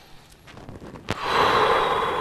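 A man's long, audible exhale during a deep yoga stretch. It starts abruptly a little after a second in, just after a small click, and fades slowly.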